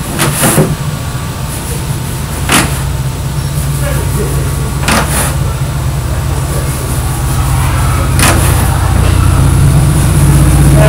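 A steady low mechanical hum, like an engine running, runs under everything. Four brief scratchy noises rise out of it at uneven intervals.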